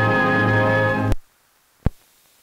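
Film soundtrack music holding a sustained final chord that cuts off abruptly about a second in, leaving faint hiss and then a single sharp click near the end.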